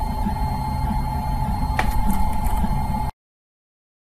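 A TRONXY desktop FDM 3D printer running mid-print: its stepper motors sound in short low tones that change with each move, under a steady whine, with one sharp click about two seconds in. The sound cuts off suddenly about three seconds in.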